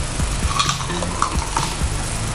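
Crunchy shiitake mushroom crisps being chewed by several people at once, an irregular crackling crunch.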